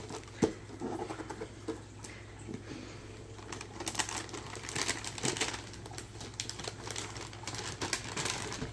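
Shiny gift-wrapping paper on a present crinkling and rustling in irregular bursts of small crackles as a baby pats and handles it. The crackling is busiest about four to six seconds in.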